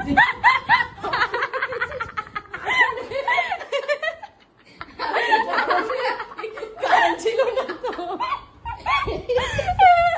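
Women laughing in repeated short bursts, pausing briefly about four seconds in before laughing again.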